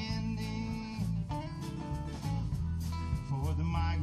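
Live band playing a song: strummed acoustic guitars over a drum kit keeping a steady beat, in an instrumental stretch between sung lines.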